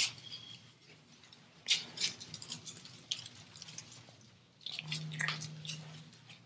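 A tense pause filled with faint breathing: a few short, sharp breaths or sniffs, with a low steady hum near the end.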